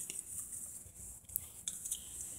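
Faint rustling of a folded paper slip being taken from a plastic bowl and unfolded, with a few small clicks.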